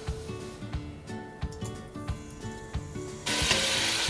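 Quiet background music, then about three seconds in a sudden loud sizzle starts as diced lean meat goes into hot oil in a stainless steel pressure cooker.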